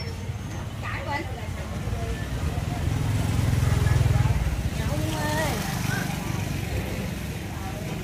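Street-market bustle: a motor scooter's engine running close by, loudest about three to four seconds in, with scattered voices of people talking.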